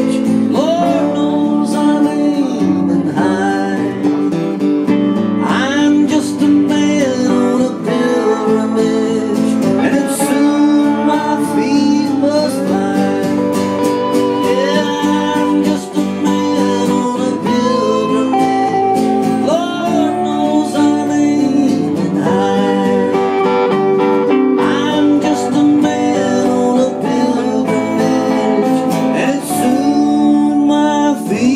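Live acoustic country-folk music: a strummed acoustic guitar with a mandolin playing melody lines over it, steady and continuous.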